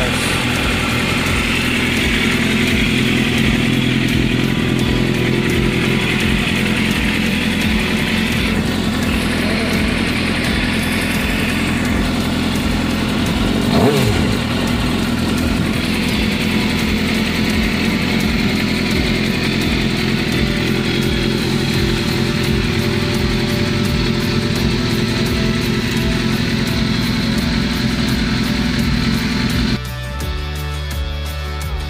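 Suzuki GSX-R 750 inline-four engine idling steadily, with one brief rise in revs about halfway through.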